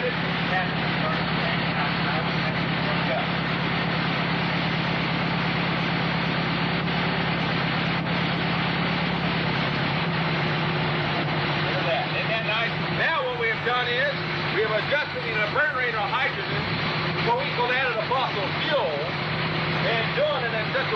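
Dune buggy engine running steadily at idle, a constant low hum that the demonstrators say is running on hydrogen gas from a water fuel cell.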